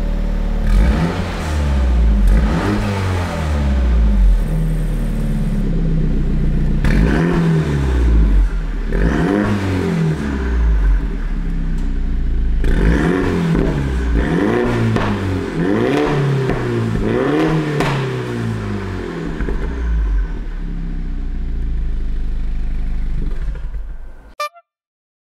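Exhaust of a 2016 MINI John Cooper Works' 2.0-litre turbocharged four-cylinder, through a REMUS aftermarket muffler with its valve fully closed: the engine is blipped again and again, the revs rising and falling in three groups, then settles to idle for the last few seconds.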